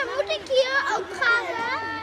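Several children's high voices chattering and calling out at once, overlapping.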